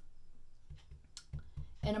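A few soft, low knocks and one sharp click in a pause between words, quiet.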